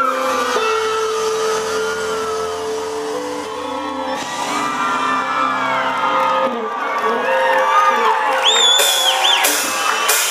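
Live amplified pop-rock band music with a held note early on, mixed with the crowd shouting and whooping. A high whoop or whistle rises out of the crowd about nine seconds in.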